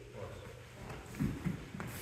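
Faint rustling and shuffling of two people in gis getting up off a foam mat, with a few soft knocks in the second half.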